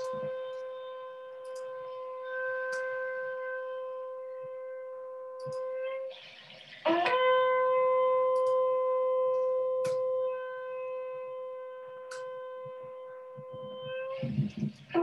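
Two long shofar blasts: one steady note held about six seconds, then, after a short break, a second that scoops up into the same pitch and holds for about seven seconds.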